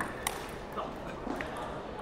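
A few light clicks of a table tennis ball between points, about half a second apart, over the steady murmur of an indoor hall crowd.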